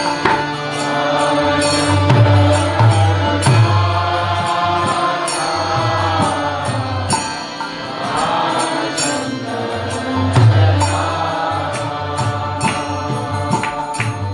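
Devotional kirtan: a harmonium sustains chords under a chanting voice, while a mridanga drum plays deep bass strokes and sharp slaps in a steady rhythm, with a violin alongside.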